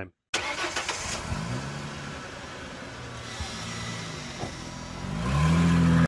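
A car engine starts with a sudden burst, rises in pitch and settles into a steady run, then revs up louder near the end.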